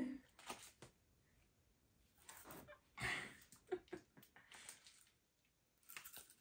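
Faint chewing of a coconut cream-filled candy held close to the mouth: a few soft, short crunches and small clicks, the clearest about halfway through.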